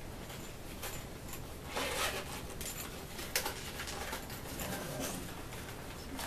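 A clear plastic zippered package being handled, with scattered crinkles, rustles and clicks of the plastic. The loudest cluster comes about two seconds in, and a sharp click follows a little past three seconds.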